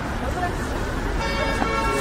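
Steady background noise, with a voice beginning a drawn-out "um" near the end.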